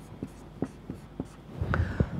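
Marker writing on a whiteboard: faint, scattered short taps and strokes, with a brief louder sound near the end.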